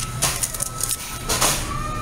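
Paper receipt coming out of a self-order kiosk's printer slot and being handled, with two brief rustles.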